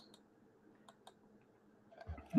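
Near silence, with a few faint single clicks.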